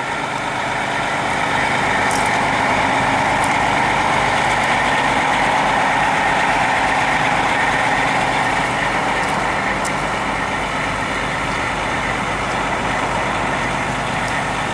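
International MaxxForce 7 diesel engine of a Starcraft XL bus idling steadily, with no revving.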